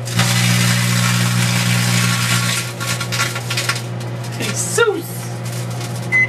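Sharp microwave oven running with its steady hum while the foil-lined chip bag inside arcs and crackles, a dense crackle for the first two and a half seconds, then scattered snaps as the bag shrinks. A short voice exclamation comes near the end.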